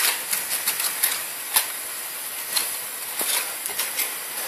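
Irregular crackling ticks over a steady hiss: crepes frying in hot pans, with the foil wrapper of a block of butter crinkling as the butter is rubbed over a crepe.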